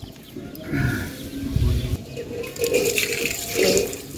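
Water splashing and sloshing in a steel bowl as a hand dips and rinses in it, with a few soft knocks.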